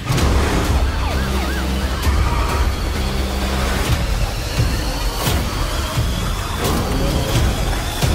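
Car-chase sound mix from an action film: a car engine driven hard, a police siren, and several crash impacts, one as a fire hydrant is knocked off, over a low, rumbling music score.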